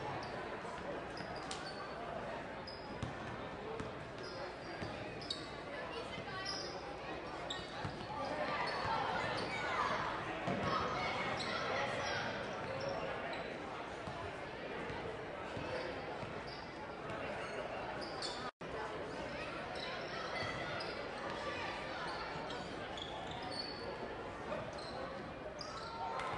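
A basketball being dribbled on a hardwood gym floor, repeated short bounces, over the steady chatter of spectators echoing in a large gym.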